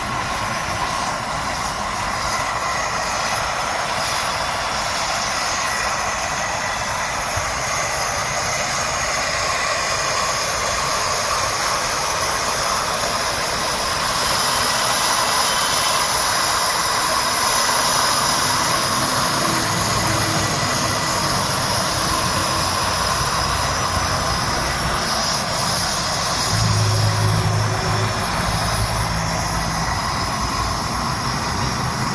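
Gas burner of a flame treatment machine running with a steady rushing hiss, with a low hum coming and going in the second half.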